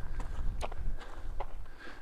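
A few footsteps on loose gravel and broken slate.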